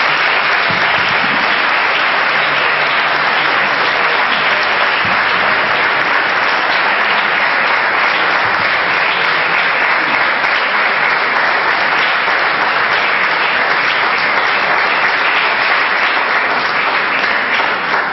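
Audience applauding in one long, steady round of clapping, welcoming a speaker who has just been introduced; it dies down near the end.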